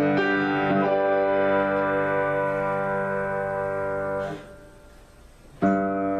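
Grand piano played in an improvisation: a couple of chords, then one long held chord that cuts off suddenly about four seconds in. After a short quiet gap the playing starts again with a strong chord near the end.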